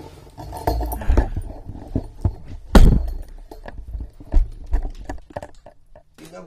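Camera being picked up and moved by hand: irregular knocks, bumps and rubbing right on the microphone, with the loudest thump about three seconds in.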